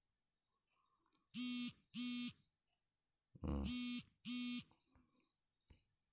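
Mobile phone's text-message alert: two short beeps, a brief low buzz, then two more identical short beeps, signalling an incoming SMS.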